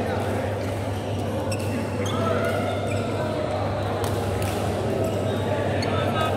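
Badminton rally: several sharp racket hits on the shuttlecock at irregular intervals, with short high squeaks of shoes on the court mat, over a steady low hum and background chatter.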